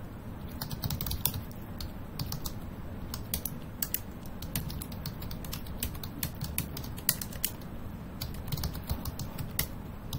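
Computer keyboard typing: irregular keystrokes as a line of code is entered.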